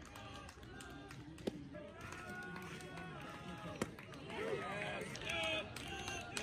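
Voices of people talking and calling out around a baseball field, with a louder burst of calling about four and a half seconds in. Two brief sharp clicks are heard, one at about a second and a half and one near four seconds.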